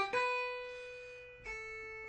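Electric guitar with a clean tone playing an E minor triad phrase: one single note rings and fades for about a second and a half, then a slightly lower note is picked and sustains.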